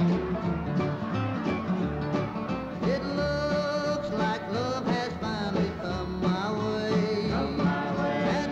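Country band with acoustic guitars, mandolin, banjo, upright bass and drums playing a country song over a steady beat. A held, wavering melody line comes in about three seconds in.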